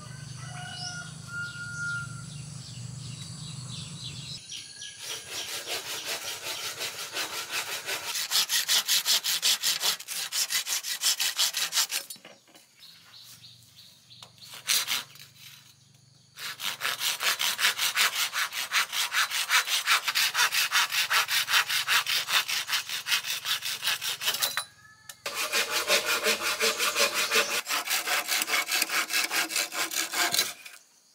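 Hand saw cutting green bamboo poles in quick back-and-forth strokes, in three bouts with short pauses between. A few bird chirps come before the sawing starts.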